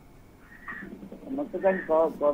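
A brief lull, then a newsreader's voice begins about a second and a half in.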